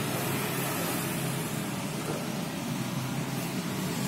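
Steady outdoor background noise: an even hiss with a low hum underneath, with no distinct events.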